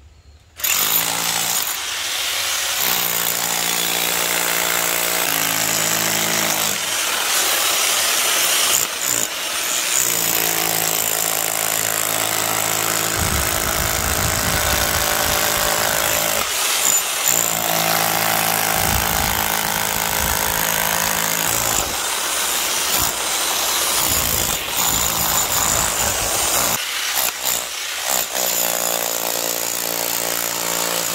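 INGCO electric rotary hammer with a chisel bit hammering into stone blocks. It starts about half a second in and runs loud and steady, with a few brief dips when the tool is eased off or repositioned.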